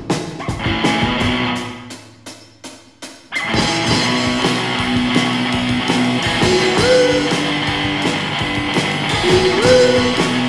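Guitar-and-drums music with a steady beat. It thins out about two seconds in and comes back in full just after three seconds, with rising guitar slides near the middle and again near the end.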